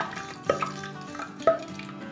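Two short knocks of a utensil against a cooking pot, about a second apart, over faint background music.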